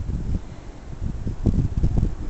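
Uneven low rumble of wind buffeting the microphone.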